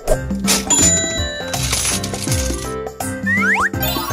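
The electronic coin-drop ('ka-ching') and ding sound of a toy cash register as one of its keys is pressed, over background music. A few quick sweeping pitch glides come near the end.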